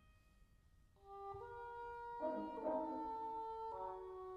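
Symphonic wind band playing a concert performance: after a short rest, held notes enter softly about a second in, and the band grows fuller and louder about a second later.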